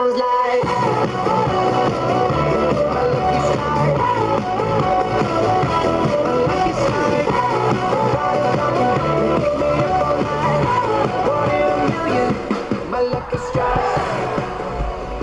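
Pop-rock song with a sung vocal, guitar and a steady beat, playing loudly throughout; a bass line comes in about half a second in.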